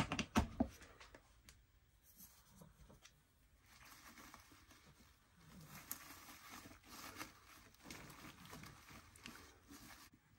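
A few sharp clicks in the first second, then faint, irregular rustling and crinkling of artificial fall leaves and flowers as hands push a small velvet pumpkin pick into the arrangement.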